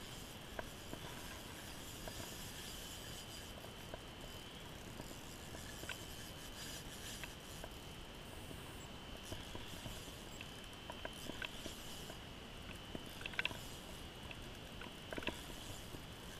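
Faint small clicks and rubs of an ice-fishing rod and spinning reel being handled while a hooked fish is played, over a steady low hiss with a thin high tone running through it.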